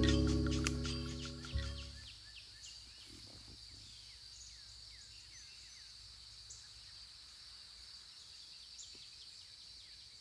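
Music fades out over the first two seconds, then faint woodland ambience: a steady high drone with scattered short, falling bird chirps.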